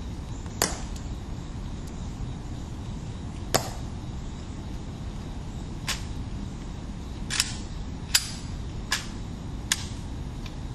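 Seven sharp, short clicks at irregular intervals, coming closer together in the second half, over a steady low background rumble.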